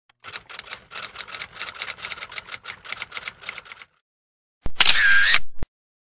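Typewriter keys striking in a rapid run of sharp clicks, about seven a second, for nearly four seconds. After a short pause comes a loud pitched ring lasting about a second.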